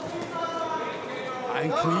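Speech only: men's voices shouting at ringside over arena crowd noise, with a man starting to speak near the end.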